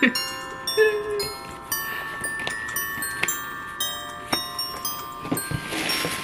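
Background music of chiming, bell-like mallet notes, each struck and left to ring. Near the end comes a burst of paper rustling.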